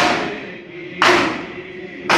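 A crowd of bare-chested men beating their chests with open hands in unison (matam): two loud, echoing slaps about a second apart, with men chanting between the strokes.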